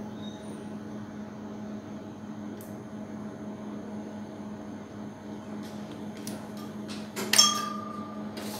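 Light clicks and handling of a micropipette and plastic tubes over a steady low hum of lab equipment, then a sharp clink with a short ringing tone about seven seconds in.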